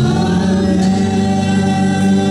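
Gospel worship song sung by a small group of amplified singers, who slide up into a long, steady held chord.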